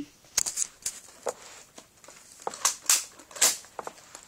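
A string of sharp clicks and clatters, spaced unevenly over a few seconds, staged as a gun being loaded.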